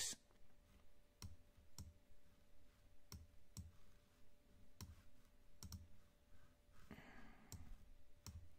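Faint, sharp clicks of a computer mouse, about ten of them at irregular gaps, some in quick pairs.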